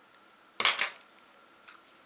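A short clatter of small hard plastic parts knocking on a hard surface, a few quick knocks about half a second in, then a faint click near the end: a mobile phone being opened and handled to take out its SIM card.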